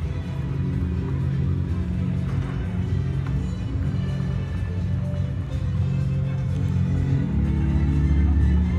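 Background music built on a deep bass line of held notes that change every second or so.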